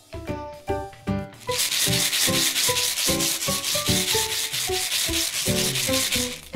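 Fingers rubbing quickly against a plastic surprise egg and its printed wrapper right at the microphone, a fast run of scraping strokes that starts about a second and a half in, over background music.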